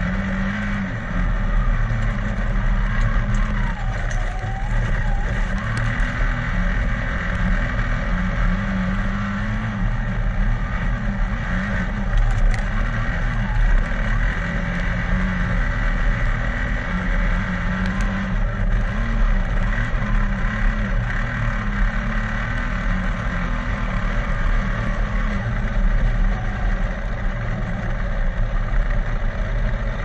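Speedcar engine at racing speed, heard close up from an onboard camera behind the driver. It runs loud and continuously, its pitch rising and falling every few seconds as the driver comes on and off the throttle around the dirt oval.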